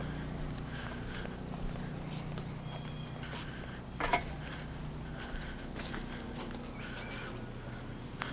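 Footsteps on a deck, slow and irregular, with one louder knock about four seconds in, over a faint steady low hum; a few faint bird chirps.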